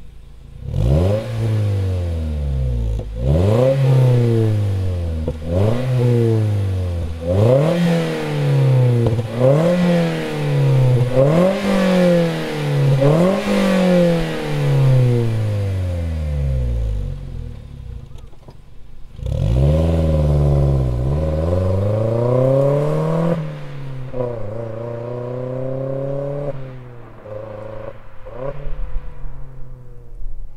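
Toyota Vitz GR Sport's 1NZ-FE 1.5-litre four-cylinder engine free-revving at a standstill through an HKS Silent Hi-Power aftermarket muffler: seven quick blips of the throttle about two seconds apart, a short settle, then one longer rev held for a few seconds before it drops back, and a few smaller blips near the end.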